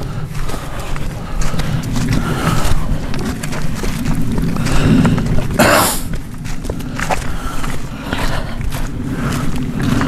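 Footsteps crunching through dry leaf litter and brush, with a steady low rumble underneath. A loud brushing rustle comes a little past halfway.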